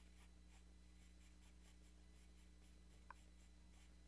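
Faint scratching of a 2B graphite pencil on stone paper in short repeated strokes, a few per second, over a steady low electrical hum, with one small tick about three seconds in.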